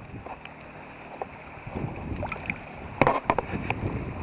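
River water sloshing and splashing right at a microphone held at the water's surface while swimming, with a cluster of sharp splashes or knocks about three seconds in.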